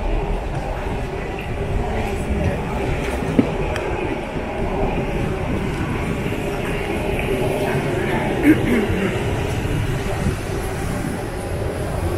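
City-centre street ambience: a steady low rumble and hum with the murmur of passers-by. Two short sharp knocks come about three seconds and eight and a half seconds in.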